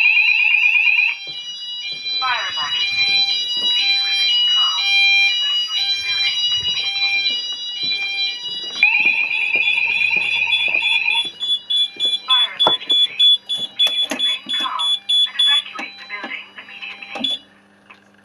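Fire alarm sounders going off after a smoke detector has been triggered in a system test. A loud, steady high-pitched tone sounds in two long blasts, over an alternating stepped-tone alarm and a recorded spoken voice message from a Fire Cryer voice sounder. All of it cuts off suddenly about a second before the end as the panel is silenced.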